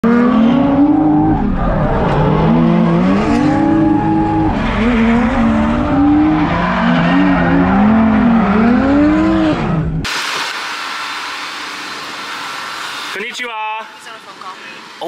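A drift car's engine heard from inside the cabin, revving up and down in quick swings with tyre noise as the car slides through a drift. About ten seconds in it cuts off abruptly to a quieter steady hiss, with a brief pitched sound near the end.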